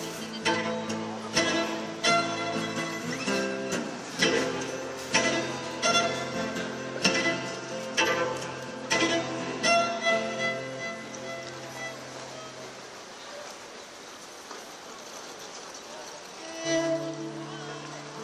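Cello played solo: notes with sharp attacks about once a second for the first ten seconds, then a long held low note, a quieter stretch, and bowed notes again near the end.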